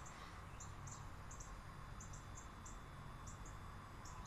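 Faint, short, high-pitched chirps repeating irregularly, two or three a second, over a low steady hum.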